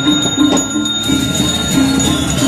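A Balinese priest's brass handbell (genta) ringing continuously in a high, steady tone, over a lower pulsing tone that repeats about three times a second.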